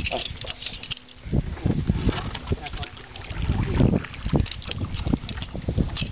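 Indistinct talking, with wind rumbling on the microphone.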